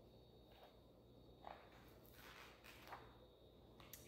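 Near silence: room tone with a few faint, brief rustles of a hardcover picture book being opened and its pages handled.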